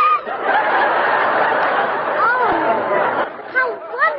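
Studio audience laughing, a single wave of laughter that lasts about three seconds and dies away just before the dialogue resumes.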